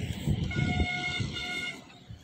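A distant horn sounds twice, a longer steady toot and then a shorter one, over a low rumbling noise.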